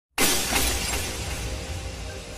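Sound effect of glass shattering: a sudden crash about a fifth of a second in, a second burst just after, then dying away over a low rumble as faint music tones come in.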